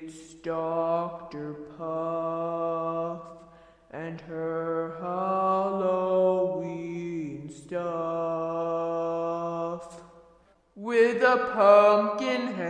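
Wordless, chant-like singing from a cartoon's intro theme: a voice holding long steady notes with short breaks between them. One note slides down about seven seconds in, and a livelier, more varied phrase starts near the end.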